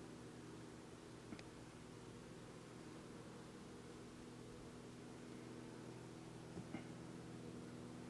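Faint, steady hum of honeybees crawling and fanning on a brood frame lifted from an open hive, with two light clicks, about a second in and near the end.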